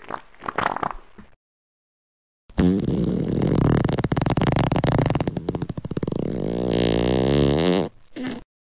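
A long fart sound effect lasting about five seconds, starting about two and a half seconds in after a short burst of sound and a pause of about a second.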